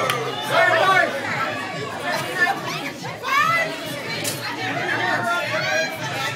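Crowd chatter: several people talking at once around a gaming table, with no single voice clear enough to make out.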